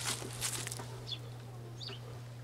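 Quiet outdoor background with a steady low hum and two faint, short, high bird chirps, one about a second in and one near the end.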